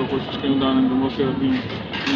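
A man's voice speaking into a handheld microphone, some syllables drawn out, over a steady background din.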